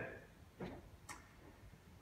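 Near silence: the room tone of a hall in a pause between sentences, with a faint click about a second in.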